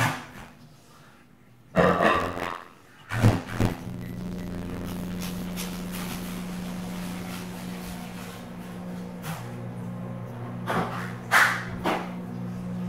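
A dog barking and growling in a few short bursts, over a steady low electric hum from a kitchen appliance that starts about four seconds in.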